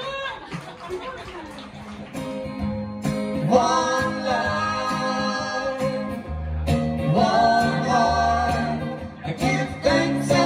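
Live acoustic band: a brief moment of talk and laughter, then acoustic guitar chords come in about two seconds in, with singing joining a second or so later over the strummed chords.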